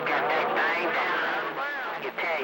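CB radio receiver playing garbled, unintelligible voices of other stations over a steady hiss of static.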